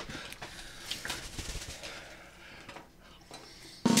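Faint rustling and small clicks of props being handled, then a drum roll starts suddenly right at the end.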